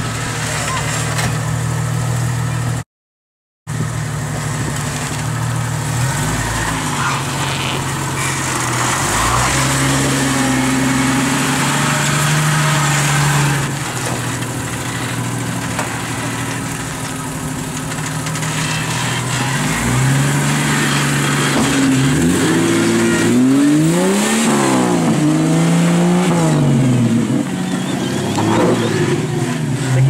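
Jeep Wrangler engine running at low speed while the Jeep crawls over boulders. It holds a steady note through the first half, then revs up and down repeatedly in short bursts during the second half as the driver works it up the rocks. The sound cuts out for under a second near the start.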